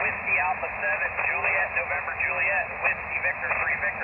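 A distant station's weak voice on single sideband, heard through the Elecraft KX2 transceiver's speaker. The speech is thin and narrow and sits half-buried in steady band hiss on 20 metres.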